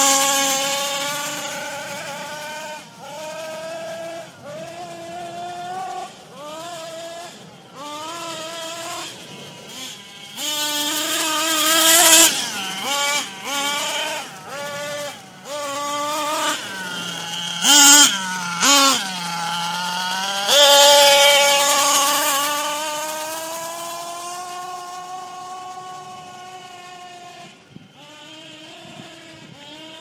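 Nitro RC car's small glow engine revving up and down in repeated bursts as it is driven, the pitch climbing and falling with the throttle. It reaches its highest revs twice around the middle, then fades away as the car runs off into the distance.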